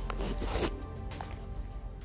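Background music with a brief rustling swish in the first half-second, then only the music.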